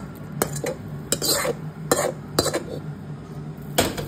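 Metal spoon knocking and scraping against an aluminium cooking pot as soya-chunk curry is spooned over rice: a string of irregular clinks and scrapes, the loudest just before the end, over a steady low hum.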